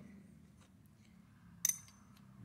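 A single sharp metallic clink about one and a half seconds in, with a brief high ring, as a steel spacer is set into a precision vise against a row of aluminium parts. A faint steady hum runs underneath.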